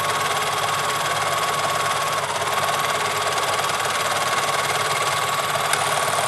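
Singer serger (overlocker) running at a steady speed, overlocking the leg seam of a pair of pants while its blade trims off the excess fabric.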